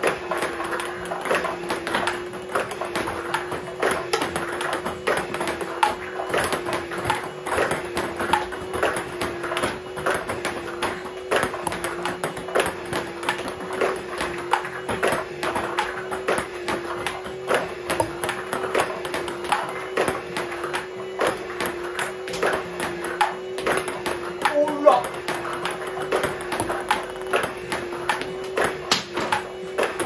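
Table tennis rally: the celluloid-type ball clicking repeatedly off the table and a rubber-faced paddle in quick, steady succession as a player returns balls with chop strokes, over a steady low hum.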